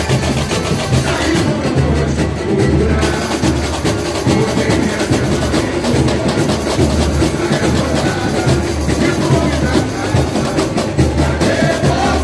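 Live samba-enredo from a samba school's bateria, with the low surdo bass drums beating a steady, regular pulse under the other percussion.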